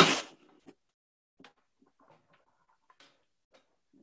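A short noisy rustle right at the start, then faint, scattered knocks and taps as jars and a board are handled and set down on a table.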